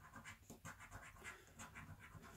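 A coin scraping the scratch-off coating from a paper scratchcard: a quick run of faint strokes, about four or five a second.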